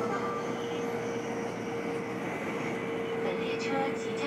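Steady running noise inside a Taiwan High Speed Rail 700T train cabin at speed: an even rushing noise with a constant steady hum.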